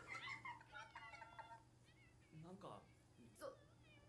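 Faint, high-pitched, wavering voices from the anime episode playing quietly in the background, with a few short lower vocal sounds later on.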